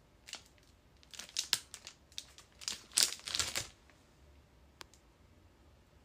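Plastic packaging crinkling and rustling as it is handled, in a quick run of crackles from just after the start to about three and a half seconds in, loudest around three seconds. One small click follows near five seconds.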